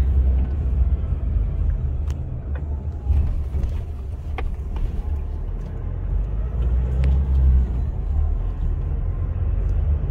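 Steady low rumble of a car driving along a street, engine and road noise heard from inside the cabin, with a few faint clicks.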